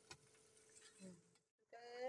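Near silence: faint room tone, with a brief dead gap at an edit. A woman's voice starts near the end.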